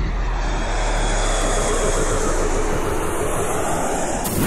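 A steady, rushing, engine-like rumble used as a sound effect, with a deep low rumble strongest in the first second or so.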